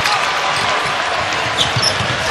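A basketball being dribbled on the hardwood court under steady arena crowd noise.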